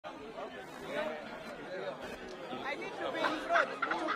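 Crowd chatter: many people talking at once in a large hall.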